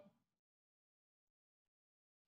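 Near silence: the sound drops out completely after the voice cuts off at the very start.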